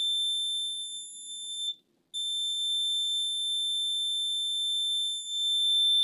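Multimeter continuity beeper sounding one steady high tone while the probes sit on the laptop motherboard's main power rail, which reads about 1.7 ohms: the rail is shorted. The tone breaks off briefly a little under two seconds in, then resumes.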